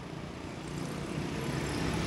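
Street traffic noise from motor scooters and cars, a steady rumble that grows gradually louder.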